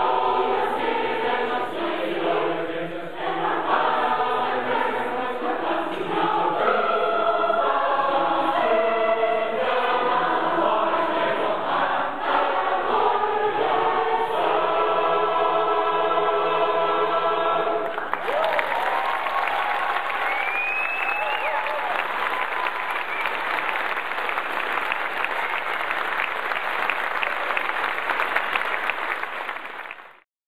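Large mixed-voice choir singing the last phrases of a song, settling on a held final chord. About eighteen seconds in the singing stops and audience applause breaks out and continues steadily.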